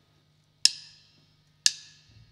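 Drummer's count-in: two sharp percussive clicks a second apart, each with a short ringing tail, just before the band comes in.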